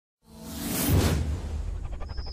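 Logo-intro sound effect: a whoosh that swells in after a moment of silence and peaks about a second in over a deep, steady rumble, with a rapid fluttering pulse starting near the end.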